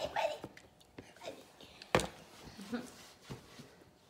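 Quiet, whispery voices with a few light knocks; the sharpest, about two seconds in, is a plastic sippy cup set down on a plastic high-chair tray.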